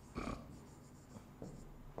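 Faint scratching of a stylus writing on a tablet: one short stroke a fraction of a second in, then a few light ticks.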